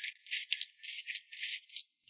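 Close-miked eating sounds of a red-oil-soaked napa cabbage leaf being slurped in and chewed: a quick run of short, wet, crisp mouth noises, about three or four a second.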